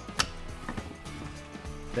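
A sharp plastic click just after the start, then a softer one about half a second later: the snap-on spool cap of a string trimmer's auto-feed head being unclipped by pressing its side tabs. Background music plays throughout.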